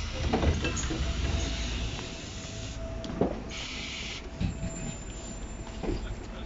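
Camera handling noise and a few knocks as the camera is carried off a city bus standing at the stop, with its engine running low underneath and a brief hiss a little past the middle.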